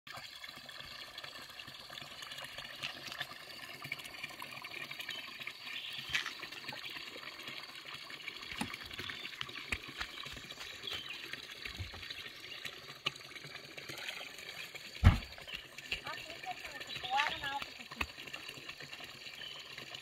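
Outdoor ambience: a steady rushing hiss like running water, with faint voices and scattered small clicks. One loud thump comes about fifteen seconds in.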